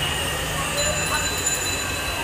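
Steady background hum and hiss of a shop's surroundings, with faint distant voices about a second in.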